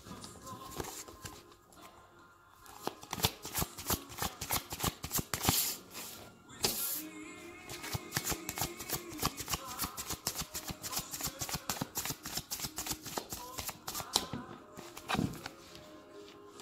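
A deck of tarot cards being shuffled by hand: a fast run of soft card-on-card clicks, with a short pause about two seconds in. A song plays faintly in the background.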